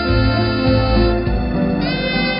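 Saxophone playing a melody of held, bending notes over a backing track with a steady bass line; a note slides upward near the end.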